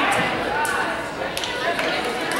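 Indistinct voices of players and spectators calling and chattering in a large gym, with a couple of short sharp knocks.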